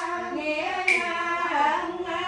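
One voice chanting in a sung style at a funeral rite, holding long notes that waver and slide in pitch, with a short sharp sound about a second in.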